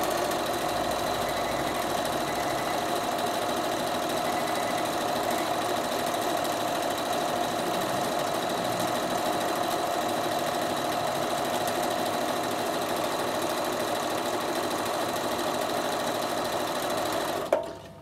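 Bernina sewing machine running steadily at an even speed, sewing a dense satin stitch (its widest zigzag at a very short stitch length) along a fabric edge; it stops near the end.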